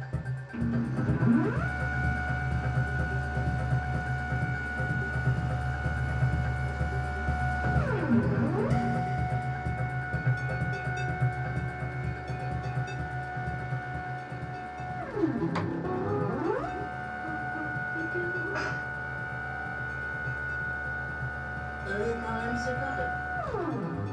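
Electronic soundtrack: three long held synthesized tones, each sliding up in pitch at its start and sliding down at its end, over a steady low drone.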